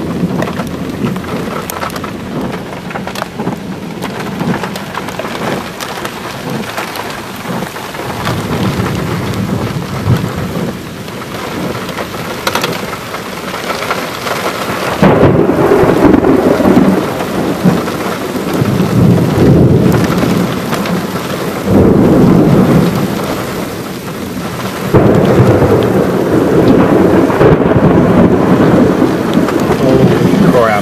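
Heavy rain and wind of a severe thunderstorm, a steady rushing noise. About halfway through, loud low rumbling surges begin and recur every few seconds until the end; these may be thunder or wind gusts buffeting the microphone.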